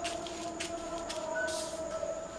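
Scissors snipping through stiff paper, several short crisp cuts roughly half a second apart, over a steady low hum.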